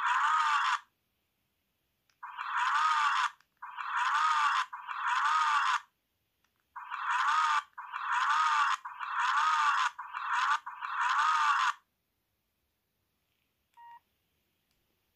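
The small loudspeaker of a cheap Chinese mini mobile phone plays the same short sound clip over and over, nine times at about a second each, with short gaps between them. Each play has a rising-and-falling tone over a harsh hiss. A faint short beep comes near the end.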